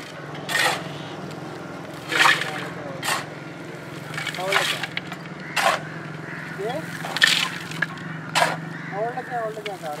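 A shovel scraping into a heap of crushed coal and tipping it into a metal pan, one crunching scoop about every one to one and a half seconds. A steady low hum runs underneath, and a voice comes in briefly near the middle and again near the end.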